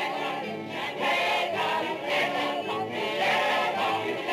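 A chorus of voices singing together over instrumental music.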